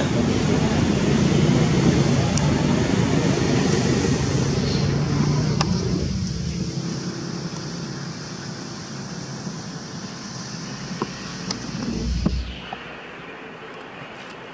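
A motor vehicle passing close by: a loud, steady road rumble that fades away over the second half. A short low rumble or bump comes near the end.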